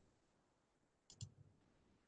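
Near silence broken about a second in by two quick clicks in fast succession, like a computer mouse double-click.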